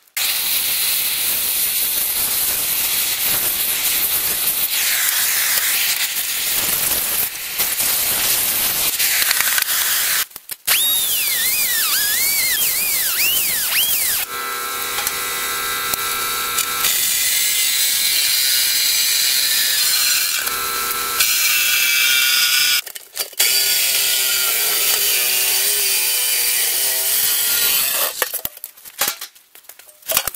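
Reciprocating saw cutting through the steel shell of an air compressor tank to slice one end off, with short breaks about ten seconds in and again a little past twenty seconds. In the middle there is a steady ringing tone for a few seconds. The cutting stops near the end.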